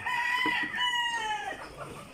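A rooster crowing: one long, drawn-out, held call that ends about a second and a half in, with a flock of chickens in the background.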